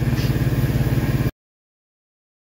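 2007 Jeep Commander's 3.7-litre V6 idling steadily with an even, fast pulse. The sound cuts off suddenly about a second and a half in.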